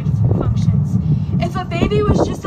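A steady low rumble, then a young woman's voice speaking into a microphone from about one and a half seconds in.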